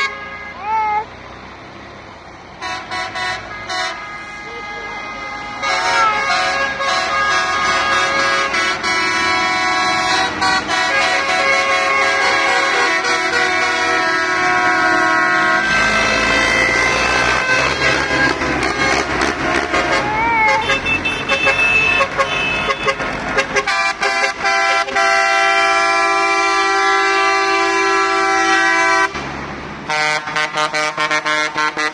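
Horns on parading tractors honking in long, held blasts, several pitches sounding together, over the noise of diesel tractors driving past, loudest around the middle.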